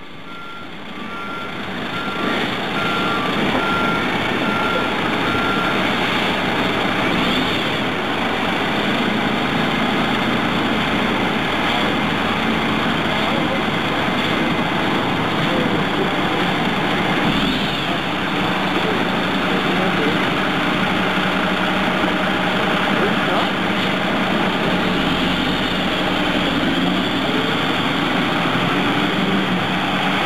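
Fire truck diesel engines running as the aerial platform truck pulls out, a dense steady engine noise throughout. A short repeated beep sounds for the first few seconds.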